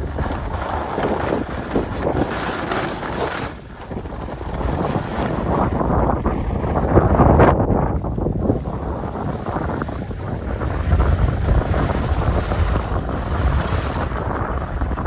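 Wind buffeting the microphone of a camera carried by a downhill skier, rising and falling in gusts and loudest about halfway through, over the hiss and scrape of skis on groomed snow.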